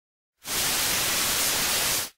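A steady burst of white-noise static, cutting in about half a second in and holding an even level: a static-hiss transition effect laid over a black screen between clips.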